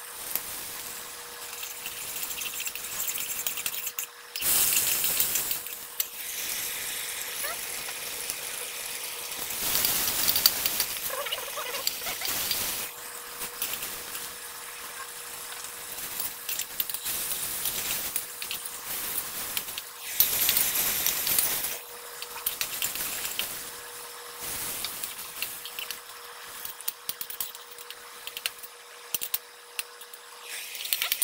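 Food sizzling in a hot wok over a gas burner, with a spatula scraping and tapping against the pan as the contents are tossed. The sizzle flares up loudly three times, about 4, 10 and 20 seconds in.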